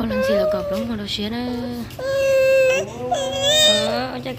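A young child crying in high, drawn-out wails, the two longest in the second half, with a lower adult voice underneath.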